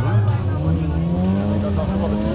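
A car engine running at low revs, its pitch rising slowly, with voices over it.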